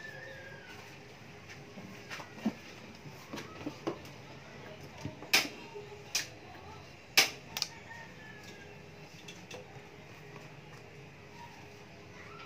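Scattered sharp clicks and knocks of kitchenware being handled, the loudest two about five and seven seconds in, over a faint steady hum.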